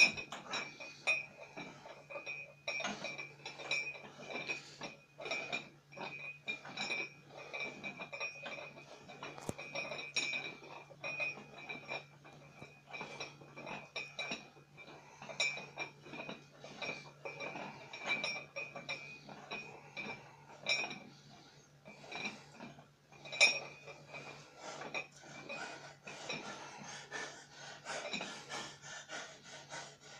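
Weight plates on a barbell clinking repeatedly and irregularly as the bar is curled up and lowered rep after rep, over a steady low hum.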